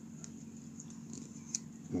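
Faint handling sounds of thin twine being wound and pulled taut around a leather slingshot tab: a few small light ticks and soft rubbing over a steady low hum.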